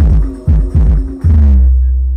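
Band music through a loud sound system: heavy bass-drum beats and bass under a melody line, ending about one and a half seconds in on a long held low bass note that rings on and slowly fades.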